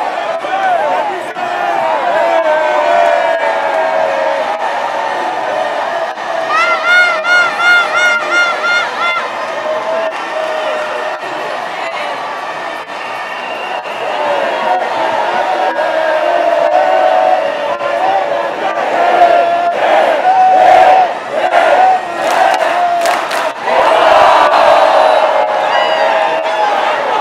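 A large stadium crowd shouting and cheering continuously. About seven seconds in, a high warbling cry with a fast wobble rises above it, and near the end a run of sharp cracks cuts through.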